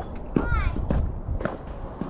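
A child's brief high-pitched voice sound about half a second in, with a few scattered knocks and a low wind rumble on the microphone.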